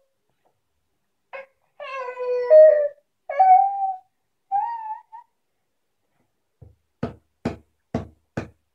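A baby's high-pitched squealing calls, three drawn-out sounds with the later ones sliding upward in pitch, followed near the end by three quick knocks about half a second apart as a hand slaps the top of a wooden chest of drawers.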